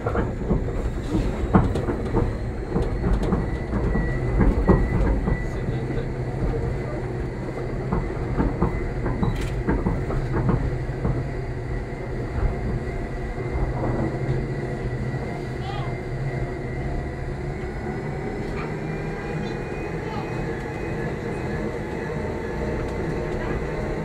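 Electric rack railcar of the Gornergratbahn running on its Abt rack line, heard from inside the cab: a steady rumble of wheels and running gear with many sharp clattering knocks in the first half, and a steady high whine throughout.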